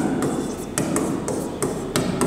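A pen or chalk writing on a board, giving irregular sharp taps and scratches, several a second, as the letters are formed.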